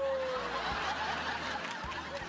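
Sitcom studio audience applauding and laughing as a woman's last held sung note slides slowly down in pitch and fades out under it, less than a second in.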